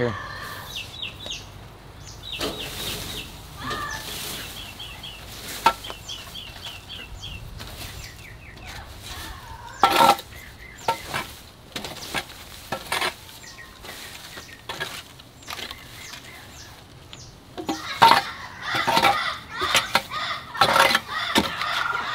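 A metal garden rake scraping and dragging dry grass, weeds and mulch across a dirt floor in irregular strokes, busier near the end. In the first several seconds a bird calls in quick runs of short chirps.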